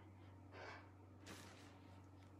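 Near silence: a low steady room hum with two faint breaths, about half a second and a second and a half in.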